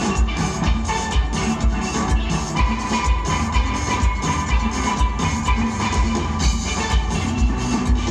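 A full steel orchestra playing live: massed steelpans carrying a melody over a steady, driving bass beat.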